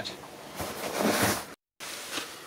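Soft cloth rustling and handling as a fabric hat is hung on a hook, lasting about a second. The sound then cuts out abruptly for a moment.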